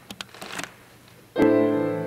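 A few faint clicks over a hushed room, then, about a second and a half in, a grand piano strikes the opening chord of a song's introduction, which rings on.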